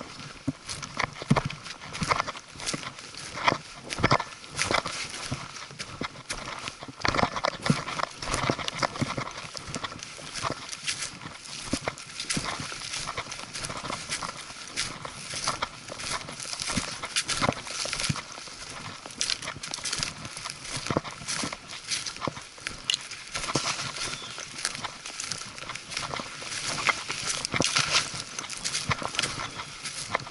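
A hiker's footsteps crunching through leaf litter and twigs on a forest trail, with brush rustling as it is pushed past. The crunches and knocks come in a quick, uneven walking rhythm, sharpest in the first few seconds and again near the end.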